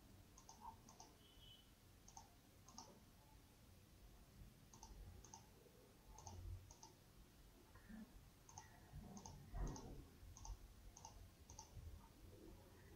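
Faint computer mouse clicks, about fifteen at an uneven pace, each a quick press-and-release pair, as faces are picked one after another in CAD software. A soft low thump about three-quarters of the way through.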